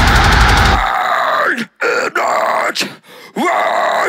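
A deathcore band playing at full volume for about the first second, then the instruments cut out. The vocalist carries on alone with harsh, guttural vocals in short phrases, with brief silent gaps between them.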